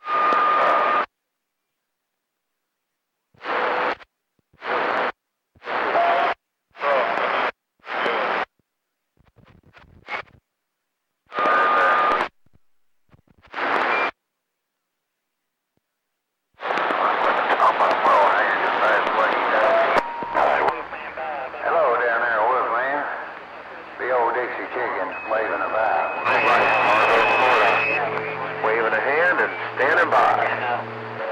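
CB radio receiver on channel 28 (27.285 MHz) opening its squelch in a string of short bursts of static and carrier, each under a second, with dead silence between them. From about halfway through it passes a continuous stretch of garbled, unintelligible voices and static, with brief steady whistling tones.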